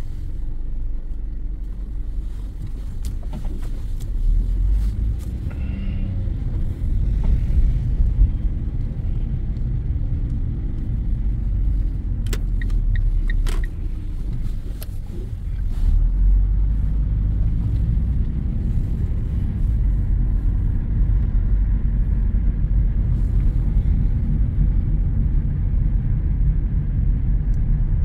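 Car driving slowly, heard from inside the cabin: a steady low rumble of engine and road noise, with a few brief clicks about twelve to thirteen seconds in.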